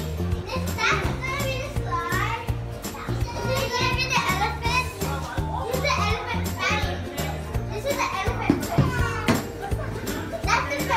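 Young children's high-pitched voices, calling out and squealing as they play, over background music with a repeating bass line.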